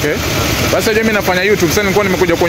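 Men talking in conversation over steady street traffic noise, with an engine running nearby.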